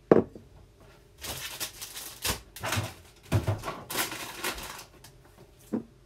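A string of improvised noises made close to the microphone: a sharp click right at the start, then a quick run of short, hissy, rustling bursts, and another sharp sound near the end.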